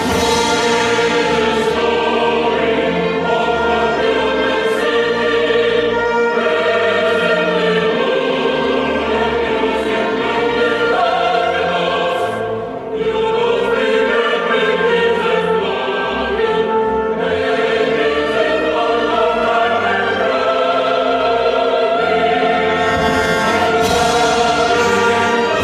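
Choir singing with orchestral accompaniment, sustained held chords with a brief lull about halfway through.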